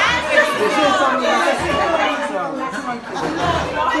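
Several people talking at once: indistinct, overlapping conversational chatter in a room.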